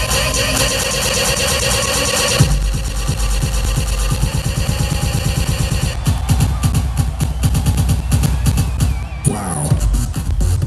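Electronic dance music from a live DJ set played loud over a concert PA, picked up by a camera microphone that overloads at the volume. Heavy bass comes in a little after two seconds, a fast steady kick-drum beat starts about six seconds in, and near the end the beat briefly drops out under a falling sweep before coming back.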